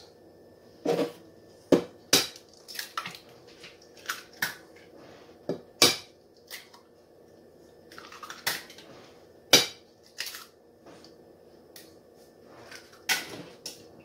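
Eggs being tapped and cracked against the rim of a glass mixing bowl: a run of sharp, irregular taps and clicks on glass.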